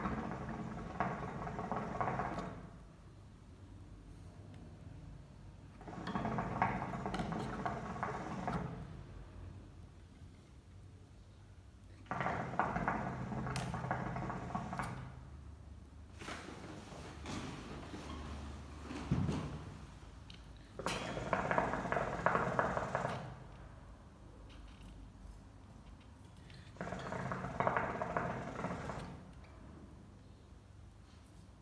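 Hookah water bubbling in the base as the smoker draws on the hose: five pulls of about two to three seconds each, every five or six seconds. These are the warm-up draws that get a freshly packed bowl smoking.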